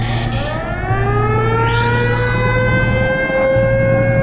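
Electronic dance-mix music: a steady bass under synth tones that glide upward and then hold, like a siren, with a quick rising sweep about two seconds in.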